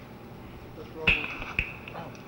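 Two sharp knocks about half a second apart, with a smaller click near the end, each ringing briefly, over steady tape hiss: a microphone being handled and set up at the lectern.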